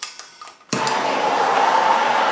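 A few faint clicks, then about three-quarters of a second in a handheld propane torch lights and burns with a steady hiss carrying a faint steady tone.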